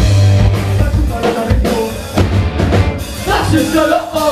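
A ska-punk band playing loud and live: a drum kit with kick and snare, bass and electric guitars through the club PA, with a sung line coming in near the end.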